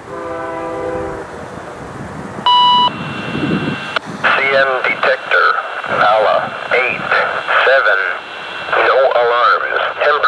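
A scanner radio picking up a railway trackside defect detector: a short steady beep about two and a half seconds in, then the detector's automated voice announcement, thin and tinny through the radio speaker. In the first second, a brief chord of several steady tones.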